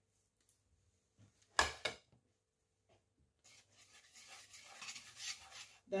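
A single short knock about a second and a half in, then a wire whisk stirring dry flour and spices in a bowl, a soft scraping rub that grows louder toward the end.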